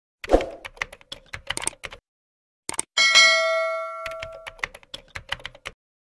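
Sound effects of a subscribe-button animation: a sharp click, then a quick run of keyboard-typing clicks. About three seconds in, a bell ding rings and fades over about a second and a half, with more typing clicks after it.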